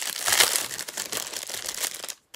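Gift wrapping crinkling and crackling in the hands as a small present is unwrapped, a run of dense, irregular crackles.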